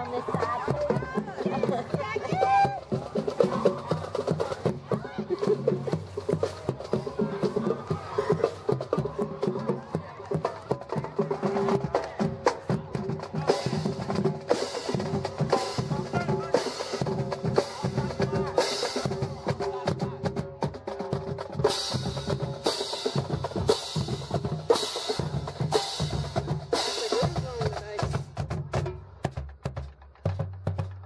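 Marching band drumline playing a street cadence: snare drums, bass drums and drum rolls in a steady march beat, with sharp high accents about once a second in the second half.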